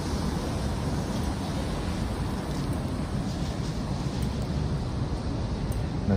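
Steady city street ambience: an even, low rumble and hiss with no distinct events.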